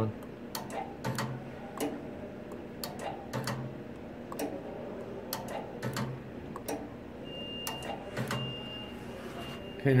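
K&S 4522 wire ball bonder cycling through ball bumps: irregular sharp clicks and ticks from the bond head mechanism, with short low hums every second or two. A faint steady high tone comes and goes in the second half.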